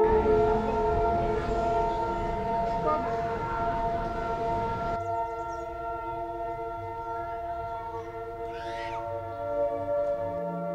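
Ambient music of sustained, layered tones like a singing bowl and synthesizer pad. For the first half a rushing noise lies under it and stops abruptly, and a short high chirp sounds near the end.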